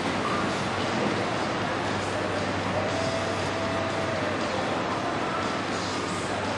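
Steady rushing outdoor background noise with no distinct events, and a faint held tone around the middle.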